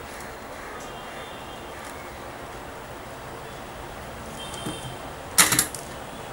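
Steady low background hiss with no distinct source, broken near the end by one brief, sharp noise.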